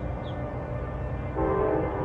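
Soft, steady background music, with a short, louder blast of a multi-note horn that starts about one and a half seconds in and lasts under a second.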